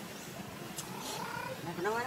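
Infant long-tailed macaque giving a few short, high calls that glide upward in pitch, the loudest near the end.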